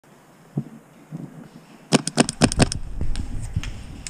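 A rapid burst of about seven sharp cracks in under a second, about halfway through: paintball fire with First Strike fin-stabilised rounds passing close overhead, the rounds known for the whistle they make in flight.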